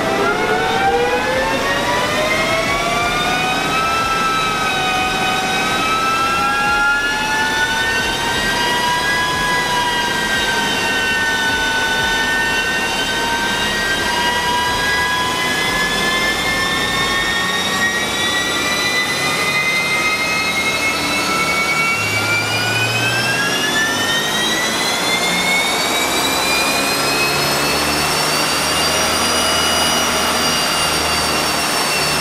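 2009 Subaru WRX's turbocharged flat-four engine and drivetrain running hard on a chassis dyno, a loud steady whine climbing in pitch: quickly at first, slowly through the middle, then faster again near the end. It is a dyno pull in fourth gear on an ethanol blend of about 64%.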